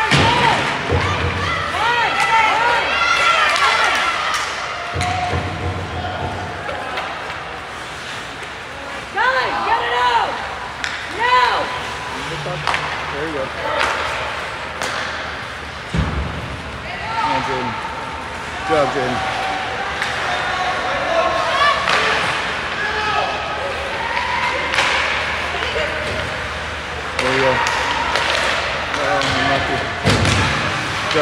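Ice hockey rink during play: indistinct shouts from players and spectators, with knocks and thuds of pucks, sticks and bodies against the boards, the sharpest about halfway through.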